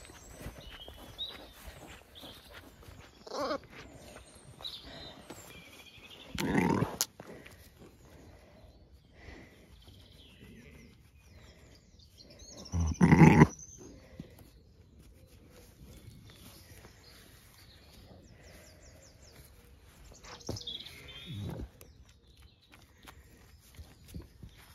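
Zwartbles sheep bleating several times, one call at a time, the loudest about halfway through.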